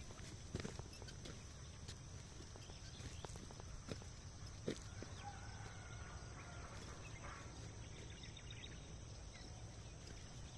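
Faint calls of poultry, a pitched call lasting a couple of seconds about halfway through, with a few soft clicks before it, over a low steady rumble.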